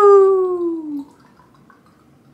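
One long drawn-out 'heyyy' cheer from a woman's voice closing a drinking toast, sliding down in pitch and stopping about a second in.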